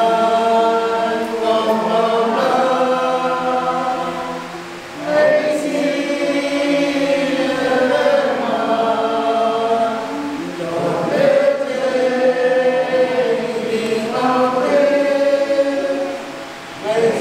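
Men's group singing a hymn unaccompanied, holding long notes, with a short break between phrases about five seconds in.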